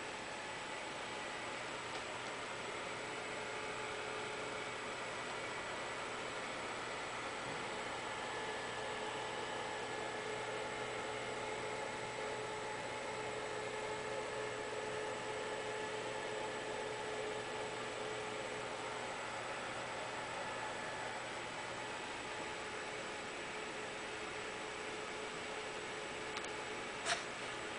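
Steady background hiss with faint, steady hum tones: room tone with no distinct events.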